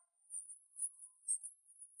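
Faint, high-pitched insect chirping, like crickets, coming in a few short pulses about half a second apart.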